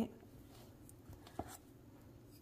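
Faint scraping and rustling of a spoon scooping cooked rice in a stainless steel bowl, with one light click about one and a half seconds in.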